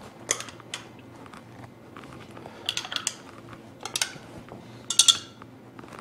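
A stirrer clinking and tapping against small plastic cups of water as pH indicator drops are stirred into each sample. It comes as scattered clusters of short clicks, over a faint steady hum.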